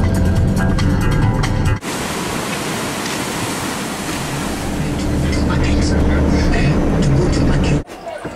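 Low rumble of a vehicle moving along a street for about two seconds, then a sudden cut to surf breaking over coastal rocks, a steady rush of noise that stops abruptly near the end.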